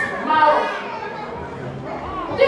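Speech: a woman talking into a microphone in a large hall.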